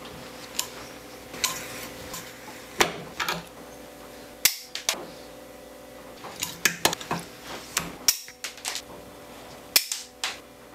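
Irregular sharp metallic clicks and snaps from pliers working stainless steel leader wire as it is twisted into a lure's wire eye, the loudest snaps about three seconds in and near the end.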